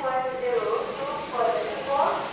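Voices talking, the words not made out.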